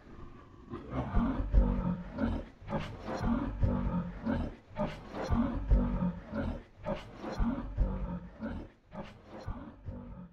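A series of deep, rough, roaring grunts, one about every three quarters of a second, growing weaker near the end.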